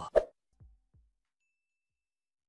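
A short pop sound effect in an animated outro graphic, followed by two faint, low falling blips, then silence.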